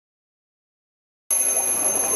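Silence, then about a second and a quarter in a twin-bell alarm clock suddenly starts ringing, a steady high-pitched jangle, as a sound effect opening a TV news theme.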